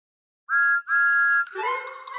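Steam-engine whistle blowing twice, a short toot and then a longer one, after a brief silence; a few notes of music start right after the second toot.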